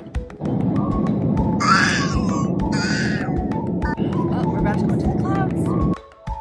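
A toddler squeals and laughs twice over the steady roar of an airliner cabin in flight, with background music playing throughout. The cabin noise starts about half a second in and cuts off just before the end.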